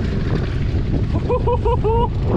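Strong wind buffeting the microphone, a loud, uneven low rumble. About a second and a half in, a person laughs in four quick bursts.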